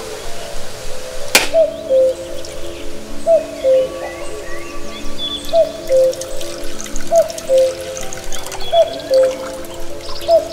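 Background music with a repeating melody. A single sharp crack about a second and a half in, a knife blade striking a husked coconut to split it, then coconut water trickling into coconut-shell cups.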